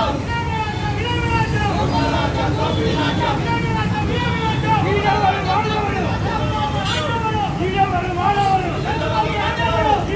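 Several people talking at once, with the steady low rumble of road traffic underneath.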